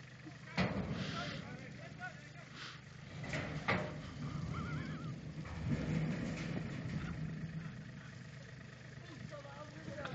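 Compact tractor's engine running steadily, with two sharp knocks, one just after half a second and one near four seconds in.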